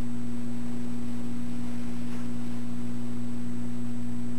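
Steady electrical mains hum on a security camera's audio line: a constant low buzz made of several steady tones, with a faint brief sound about two seconds in.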